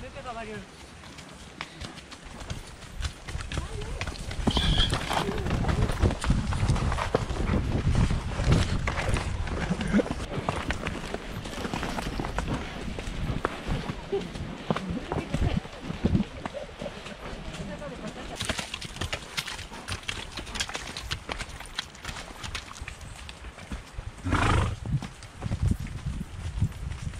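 Horses walking down a muddy, stony forest trail: irregular hoof thuds and clicks, with brush and dry bracken rustling against horse and rider. A brief louder sound comes near the end.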